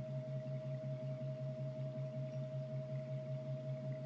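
Background drone music: a low hum that wavers several times a second under a steady, higher ringing tone, in the manner of singing-bowl meditation music.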